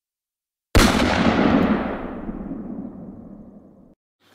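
A single sudden boom, an edited-in transition sound effect, that dies away over about three seconds, its high end fading first.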